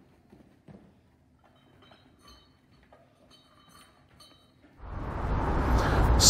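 A small bell jingling faintly inside a cardboard box as a child does star jumps, with soft thumps of feet landing. About five seconds in, a steady rush of outdoor background noise comes up suddenly.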